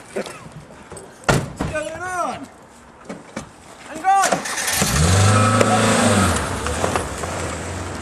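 A couple of sharp clicks, then a car engine starts about five seconds in. It revs loudly for a second or two and settles into a steady idle.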